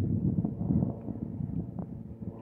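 Wind buffeting the microphone: a low, gusty rumble that rises and falls.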